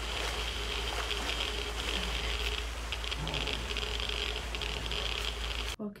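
Dosimeter crackling densely and steadily over a low hum in a TV drama soundtrack, cutting off suddenly near the end.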